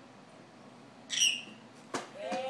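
A short, high squeal about a second in, falling slightly in pitch, then a sharp click near the end as a button on a baby's electronic music activity table is pressed.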